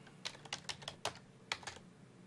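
Computer keyboard being typed on: about a dozen quick, irregularly spaced keystrokes as a short phrase is entered.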